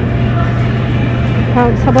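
Steady low hum of supermarket refrigerated display cases, unbroken throughout. A woman's voice comes in near the end.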